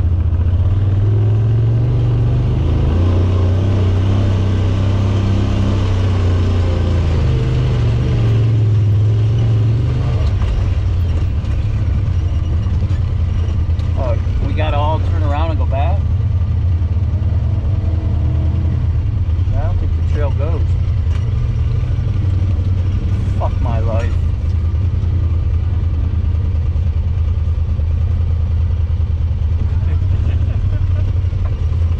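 Honda Talon side-by-side's parallel-twin engine running at low speed, its pitch rising and falling over the first ten seconds as it works over rocks, then holding steadier. Brief voices come in around the middle.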